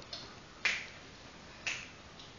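Two sharp snapping clicks about a second apart, part of a steady beat of roughly one per second.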